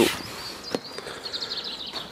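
A bird singing in the background, a thin high song that turns into a quick warbling run in the second half, over outdoor background noise. One sharp click comes a little under a second in.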